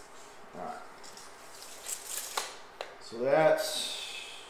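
A steel tape measure's blade retracting into its case with a short rattle about two seconds in, ending in a couple of sharp clicks. A man's short vocal sound follows near the end and is the loudest thing.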